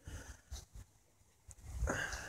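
Mostly quiet, with a few faint clicks and a brief small-dog sound near the end.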